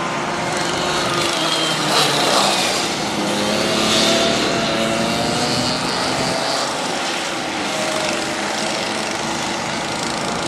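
Honda cadet karts' small single-cylinder four-stroke engines buzzing as the karts lap the circuit, their pitch gliding up and down with throttle and passing, loudest about two and four seconds in.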